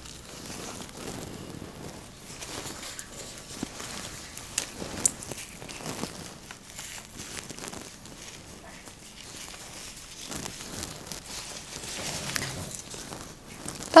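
Soft rustling and crinkling of lisianthus stems and foliage being trimmed with a florist's knife and pushed in among roses and thistles, with a couple of light clicks around five seconds in.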